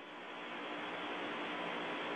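Steady hiss of an open air-to-ground radio channel between crew reports, thin and narrow-sounding, with a faint steady hum underneath. It fades up gradually.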